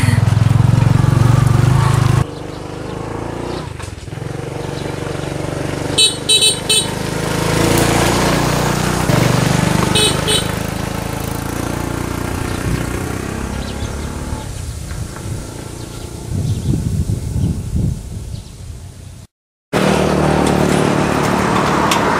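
Motorbike-drawn tuk-tuk running along a dirt road, its small engine loud from on board at first and quieter from the roadside after a cut. A vehicle horn toots in quick bursts about six seconds in and again about ten seconds in. Near the end a different engine runs steadily.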